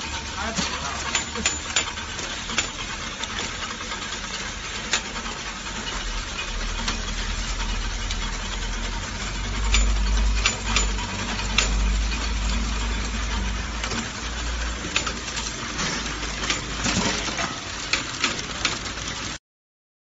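Chain-type tongue depressor quality control machine running: a steady mechanical clatter of wooden sticks with frequent sharp clicks over a low rumble that swells in the middle. It cuts off suddenly near the end.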